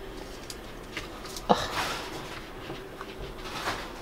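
Quiet room noise with a few faint clicks, then a short grunt, 'ugh', with a breathy exhale about one and a half seconds in.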